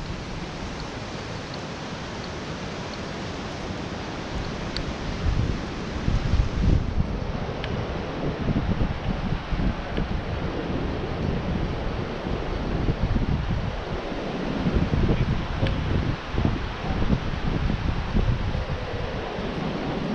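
Wind buffeting the microphone in gusts over a steady rush of breaking surf. The gusts grow stronger about a third of the way in.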